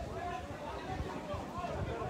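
Indistinct talking of people close to the microphone, with repeated low thumps underneath.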